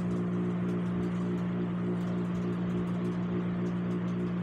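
A steady low hum of several even tones, unchanging in pitch, with a few faint ticks over it.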